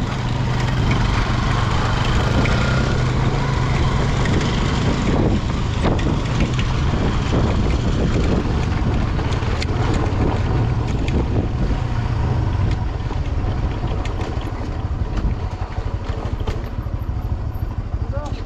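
Motorcycle engine running at low speed on a rough gravel road, with the tyres crunching over loose stones and scattered small knocks from the rocks. The sound eases off a little near the end as the bike slows.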